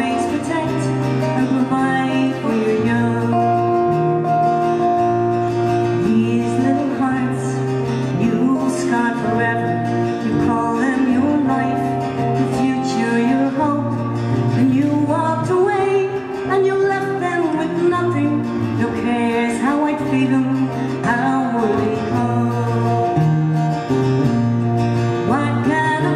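A slow song played live on two guitars, strummed and picked, with a woman singing over them.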